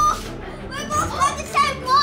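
A boy's excited, high-pitched wordless cries: several short ones in quick succession in the second half.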